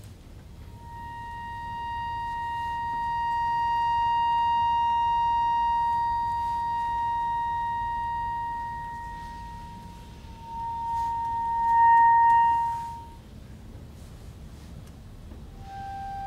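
A single high reed-instrument note, held for about nine seconds as it swells and fades, then sounded again at the same pitch for a few seconds, louder, before it stops.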